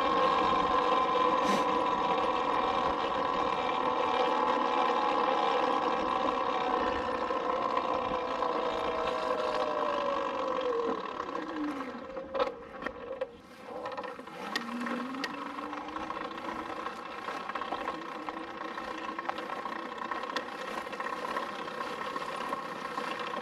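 Talaria Sting electric dirt bike's motor whining under way, over wind and tyre noise. The whine falls steadily in pitch over about twelve seconds as the bike slows, and a few clicks follow. It then rises again at a much lower pitch and holds as the bike rolls on slowly.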